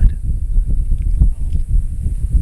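Wind buffeting the camera microphone: a loud, uneven low rumble that gusts and flutters.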